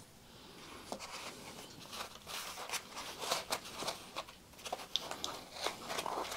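Quiet handling noises of tuning forks being set down and picked up: scattered small clicks, taps and rustles, with no fork left ringing.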